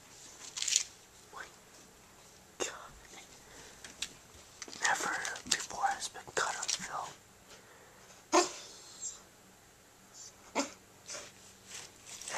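A puppy gnawing a rawhide bone: scattered sharp clicks and crunches of teeth on the hide every second or two, the loudest near the start and about two-thirds of the way through.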